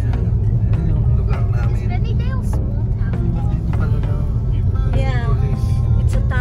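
Steady low rumble of a car driving, heard from inside the cabin, with music and a voice over it.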